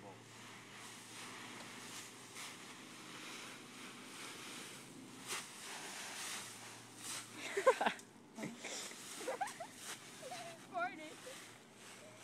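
Dry fallen leaves rustling and crackling as a person digs and burrows into a leaf pile. About three-quarters of the way through, a short loud vocal cry cuts in, followed by a few brief voice sounds without words.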